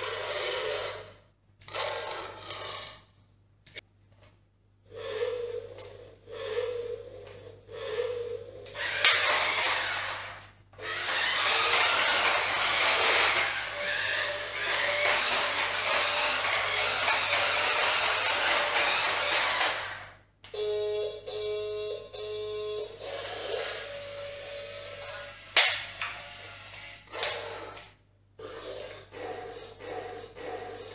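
VTech Switch & Go Dinos Bronco remote-control triceratops toy car playing short electronic voice phrases and tunes from its speaker. About nine seconds in comes a loud, steady rush of engine sound and motor noise for some ten seconds as the car races across a tiled floor, then a short electronic jingle. A sharp knock comes as the rush starts and another at about 26 seconds.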